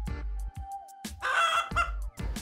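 A chicken squawk sound effect about a second in, short and pitched, over soft background music.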